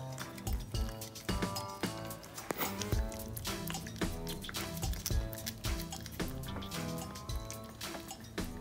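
Background music: a melodic tune with held notes over a beat.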